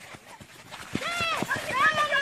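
Running footsteps on a sandy dirt field, a quick string of soft thuds, with a high-pitched shout from about a second in.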